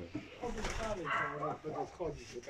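Domestic pigeons cooing in the loft.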